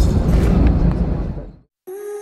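Deep rumble of airliner cabin noise during taxiing, fading out about a second and a half in. After a brief silence, held synthesizer notes begin just before the end.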